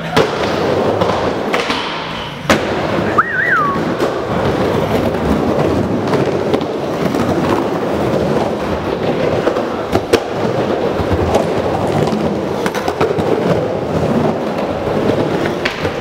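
Skateboard wheels rolling steadily on a wooden bowl, with sharp clacks of the board and trucks striking the wood throughout. A brief rising-and-falling whistle comes about three seconds in.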